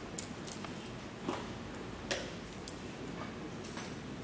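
Quiet room tone of a chess playing hall with a few scattered light clicks and taps.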